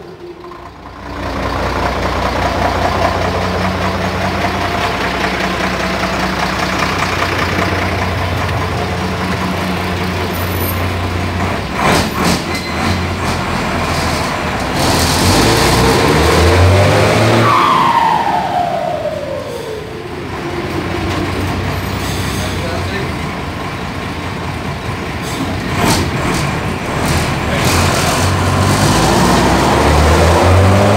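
Mercedes-Benz 1721 bus's turbo-diesel engine pulling while driving, its KKK K27 turbocharger fitted with a 'pente' modification on the turbine to make it whistle. About two-thirds of the way through, the turbo whistle falls steadily in pitch over a few seconds as the turbo spools down, and it rises again near the end.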